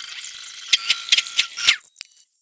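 Film soundtrack played back many times faster than normal, so dialogue and effects turn into a dense, high-pitched squeaky rattle with several sharp clicks. It stops shortly before the end.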